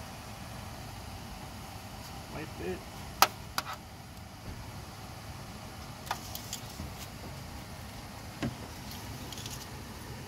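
Engine oil dipstick being handled while checking the oil level in a Honda Pilot: a few short, sharp metallic clicks and light taps as it is wiped and slid back into its tube, with a duller knock near the end, over a steady low hum.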